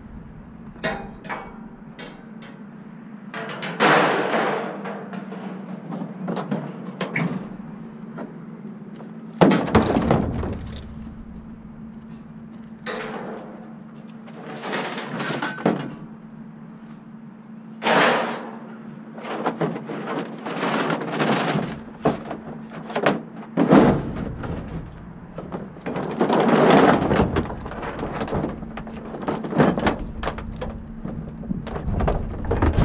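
Scrap pieces being handled and tossed into a pickup truck's ribbed bed: a string of knocks, clatters and scrapes, with louder thuds around 4, 9 and 18 seconds in.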